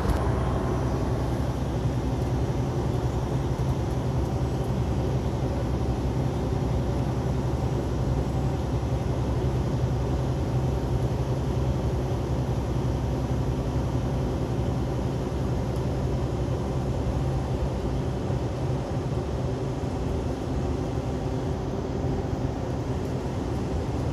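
Semi-truck's diesel engine running steadily at cruising speed with tyre and road noise, heard from inside the cab as an even low drone.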